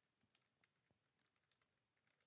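Near silence, with very faint, irregular computer keyboard keystrokes as a password is typed.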